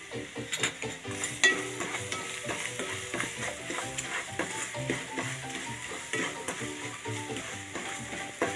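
Spiced onion masala with curry leaves sizzling in oil in a kadai while a wooden spatula stirs it, with short scrapes of the spatula against the pan.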